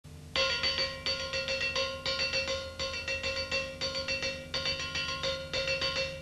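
Metal song intro: a clean, bell-like electric guitar picks a short figure of ringing notes and repeats it, each phrase about a second long, starting a moment in.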